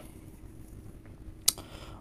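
Quiet room tone with a faint steady hum, broken by one sharp click about one and a half seconds in.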